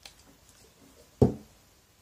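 A single dull thump just past halfway, as a plastic bottle is set down on a cloth-covered table, with a faint click at the start.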